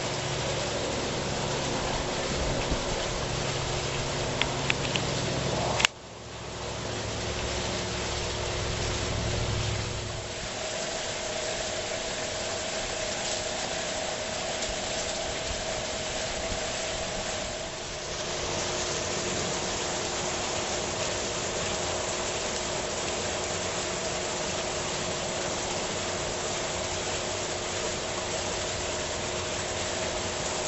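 A steady mechanical hum over a constant hiss, with a low rumble that fades out about ten seconds in. One sharp click about six seconds in.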